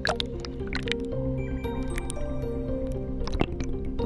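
Background music with slow held notes, over water sloshing and splashing around a camera at the waterline, with a few short sharp splashes, the loudest near the end.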